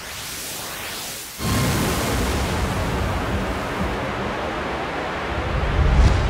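Synthetic cinematic sound effect: whooshes sweeping up and down in pitch, then about a second and a half in a sudden jump to a loud, deep rumbling noise that swells to a peak near the end.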